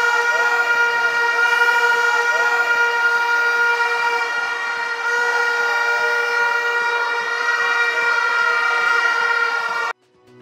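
A horn blown in a football crowd, held at one steady pitch for the whole stretch, with crowd voices underneath; it cuts off suddenly at the end.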